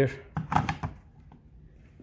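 Plastic Honeywell Home Pro Series thermostat pushed onto its wall plate: a short cluster of clicks and knocks about half a second in.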